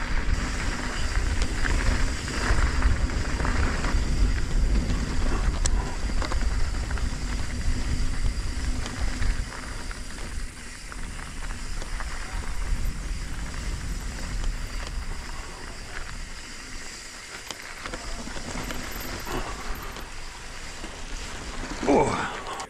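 Mountain bike rolling along a loose, gravelly dirt trail: tyres crunching over the grit and the bike rattling, with wind buffeting the microphone. The sound is louder for the first half and eases off about halfway through.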